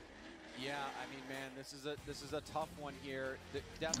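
Low-level speech from the replayed broadcast's English commentary, with background music underneath.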